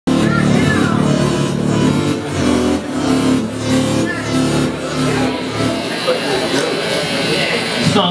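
Live electronic band music played loud from a laptop and synthesizer rig, with a steady beat over sustained bass notes, and voices on top.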